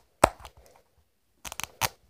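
Sharp plastic clicks and cracks as fingers pry at the seam of a plastic toy ball trying to snap it open: one about a quarter second in, then a quick cluster of three or four near the end.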